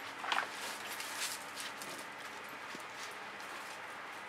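Dogs running around in dry leaves, heard as faint, irregular crunching and pattering, with one brief sharper sound about a third of a second in.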